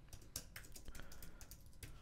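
Computer keyboard typing: about a dozen faint keystrokes in a quick run, entering a short search term.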